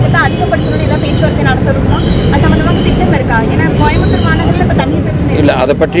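Speech throughout over a steady low background rumble; a man's voice comes in close and clear near the end.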